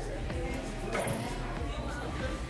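Shop ambience: indistinct voices with music in the background.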